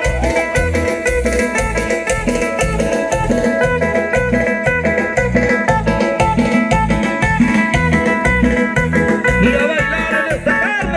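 Amplified live band music: a guitar melody over a steady, pulsing bass beat.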